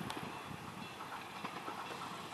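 Tokyu 7000 series electric train running along the track toward the listener, its rolling sound faint and steady, with a few light clicks.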